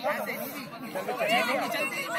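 Several adults talking and calling out at once, overlapping group chatter.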